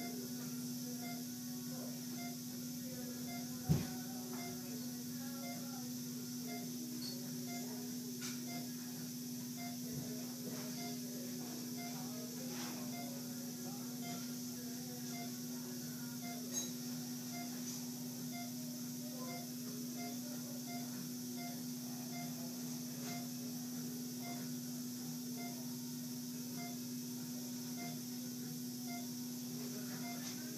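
A patient monitor beeping steadily about once a second, each beep marking a heartbeat picked up for the heart-rate and blood-oxygen reading, over a steady low hum. A single thump comes about four seconds in.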